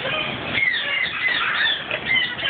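Birds chirping and whistling, many short calls overlapping one another.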